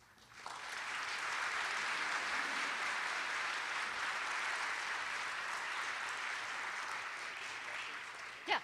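Audience applauding, starting about half a second in and holding steady, easing slightly near the end.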